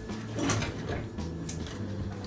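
Light household handling noises: a couple of soft knocks or clicks, about half a second in and again near the middle, as things are fetched and moved about at a kitchen counter.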